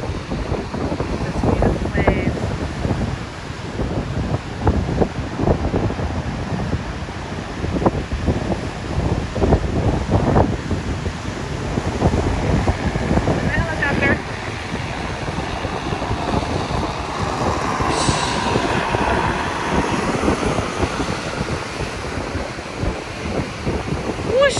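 Heavy ocean surf breaking and churning against a stone sea wall, with strong wind buffeting the microphone in gusts.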